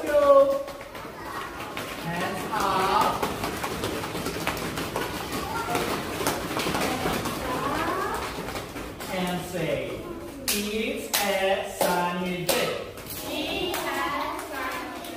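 Young children's voices talking and calling out in a classroom, coming and going throughout, with a few short sharp taps about ten to thirteen seconds in.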